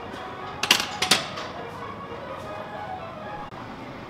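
Two sharp metal clanks about a second in, half a second apart, as a loaded barbell is set back onto the bench press rack's hooks, over background music.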